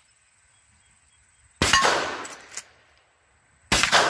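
Two shots, about two seconds apart, from a lever-action .44 Magnum rifle firing .44 Special rounds. The first hits a steel target with a clang; the second misses.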